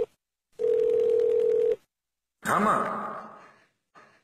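A telephone ringing tone on the line: one long, steady beep lasting about a second, the call ringing through before it is answered. About two and a half seconds in, a voice answers "Maa".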